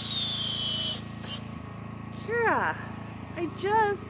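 Cordless power driver running a screw into a deck board, its high motor whine falling in pitch as the screw seats, stopping about a second in. Then a woman's voice with a few sliding exclamations.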